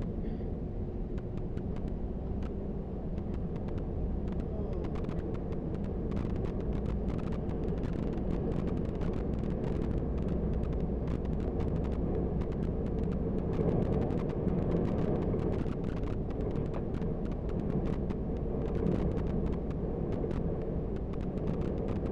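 A bus driving at steady speed, heard from inside the cabin: a constant engine and road rumble with a low hum, and frequent small rattles and clicks.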